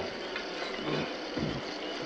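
Steady hiss from a powered MTH Proto-Sound 2 model of a C&O Allegheny steam locomotive.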